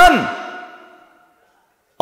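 A man's amplified voice through a public-address system: the last syllable of a spoken phrase falls in pitch and its echo dies away over about a second.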